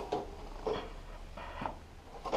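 Faint handling sounds of a plastic printer conveyor section as it is lifted free of its hooks and held: a few soft knocks and rustles.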